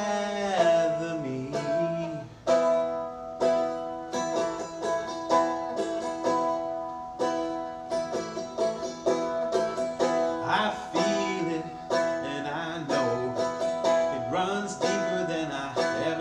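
Seagull Merlin, a four-string stick dulcimer, strummed in a slow steady rhythm, about one chord stroke a second. A sung note trails off at the start, and there is some singing in places later.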